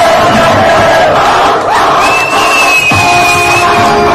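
Loud dance music playing while an audience cheers and shouts over it. A long high note sounds about halfway through.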